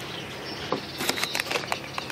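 A few light clicks and taps, mostly between about one and two seconds in, as a celery salt shaker and a paper hot dog tray are handled, over a quiet outdoor background.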